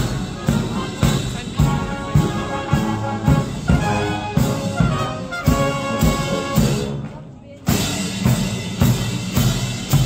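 A Foot Guards military band marching and playing a march on brass, including trombones and a sousaphone, with drums. A drum beat falls about twice a second, and the music breaks briefly about seven seconds in.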